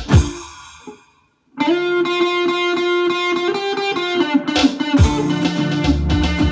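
Live band music: a full-band hit rings out and dies away to silence just after a second in. An electric guitar then plays a fast, even run of repeated notes through an effect, and drums and bass come back in near the end.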